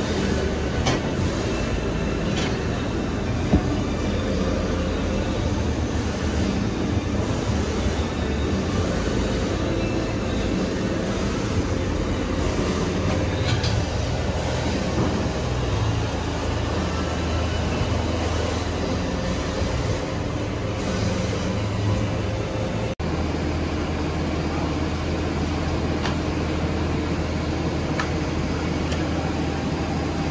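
Hydraulic leather cutting press (clicker press) running: a loud, steady machine hum with a low drone, and a sharp click about three and a half seconds in.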